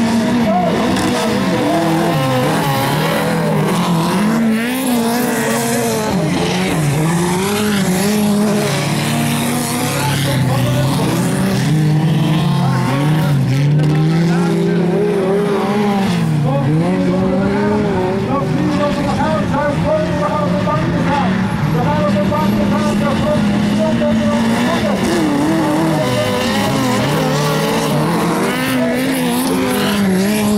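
Autocross touring-class race car engines running hard on a dirt track. They rev up and fall back again and again as the cars accelerate and back off for the corners.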